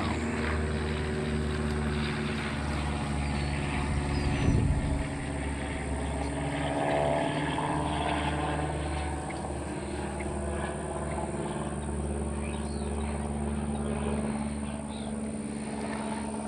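A steady, low mechanical drone, like a motor or engine running, holding one pitch throughout, with a brief low rumble about four and a half seconds in.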